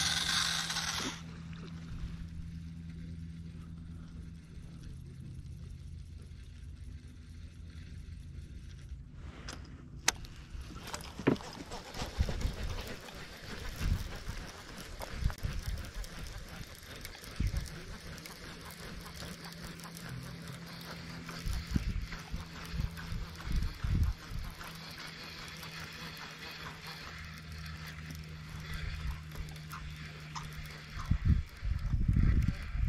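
Handling noise from a baitcasting fishing reel and its line close to the microphone: scattered clicks and knocks from about ten seconds in, over a steady low hum. A brief rush of noise opens it.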